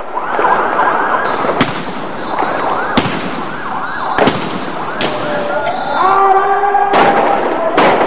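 Sirens wailing over five loud, sharp bangs of police firing spread through the clip, during a night-time riot-police clearance operation using blank rounds, rubber bullets and sound grenades.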